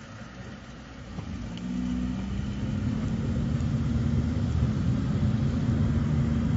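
A car's engine and road noise building up as a car pulls away and gathers speed: quiet for about a second and a half, then a low engine drone that grows steadily louder.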